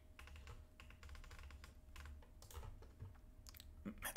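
Faint, irregular clicking of a computer keyboard and mouse, over a faint steady hum that stops just before the end.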